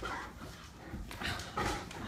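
A Great Dane making a few short, soft whines, fussing out of impatience to go to bed.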